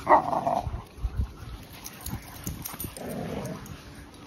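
Dogs playing rough together, one giving a short growl at the start, followed by softer low thuds and a quieter growl about three seconds in.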